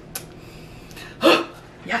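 A woman's single short, breathy vocal burst a little past halfway, like a laugh or sniff.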